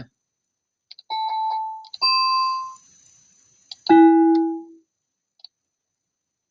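BeepBox 'bell synth' software instrument sounding three single held notes, one after another. The first comes about a second in and the second, a little higher, about two seconds in. A lower, louder note follows about four seconds in and rings for under a second. Faint mouse clicks fall between the notes.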